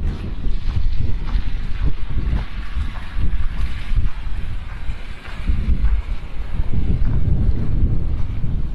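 Wind buffeting the microphone, a loud, gusty low rumble, with faint steps crunching in snow underneath.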